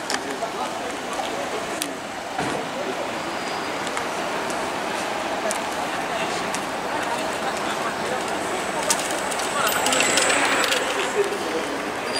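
Street ambience: a steady background of traffic and indistinct voices, with scattered faint clicks and a louder swell about ten seconds in.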